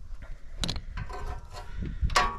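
Small handling noises of a leak-down tester's hose fitting being picked up and threaded into a spark plug hole, with one sharp metallic click about half a second in.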